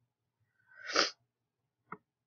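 A person sneezing once, a breathy build-up ending in a sharp, loud burst about a second in. A single mouse click follows near the end.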